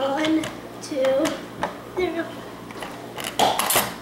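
A quick cluster of hard plastic clicks and rattles about three seconds in: the Trouble game's Pop-O-Matic dome being pressed and the die clattering inside it. Children's voices before it.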